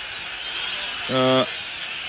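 A man's voice holds one drawn-out, flat-pitched 'eh' of hesitation about a second in, over a steady low background hiss and hum.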